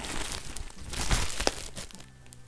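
Drycare Confidry 24/7 adult brief with a soft plastic backing crinkling as it is unfolded and spread out by hand, a run of crackles that grows louder with sharper snaps about a second in.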